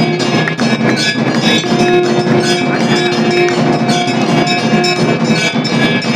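Hindu temple aarti music: bells ringing and percussion striking continuously, with long held notes that come back every second or two.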